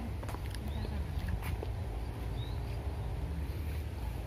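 Wind rumbling on the microphone outdoors, with scattered faint clicks and a brief high chirp about two and a half seconds in.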